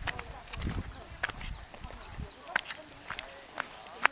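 Footsteps of a person walking along a stone and grass path: irregular sharp clicks about every half second, under a background of people talking. A low rumble on the microphone runs for over a second near the start.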